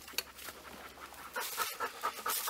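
A dog panting in quick, repeated breaths, hot and winded after an uphill hike. Near the end come a few light rustles and ticks of gear being handled.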